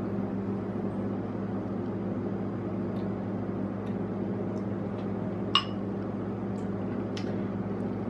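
A metal spoon clinks sharply against a ceramic bowl once, about halfway through, with a few fainter taps, over a steady low electrical hum.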